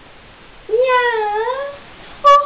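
A single drawn-out meow, about a second long, that dips in pitch and rises again.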